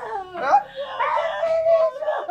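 A woman wailing in grief: two long, drawn-out cries that waver and bend in pitch.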